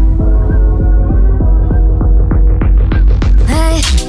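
Sped-up techno remix build-up without vocals: a deep, steady bass and a held chord under a fast, even drum roll of about five hits a second. The roll gets brighter over the last two seconds and breaks off sharply at the end.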